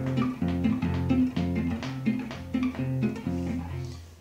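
Nylon-string acoustic guitar playing a phrase of a polka: a quick run of plucked melody notes over bass notes, dying away at the very end.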